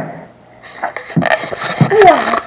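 Paper rustling and handling noises as the pages of a coloring book are moved and turned, in short irregular scrapes starting about half a second in.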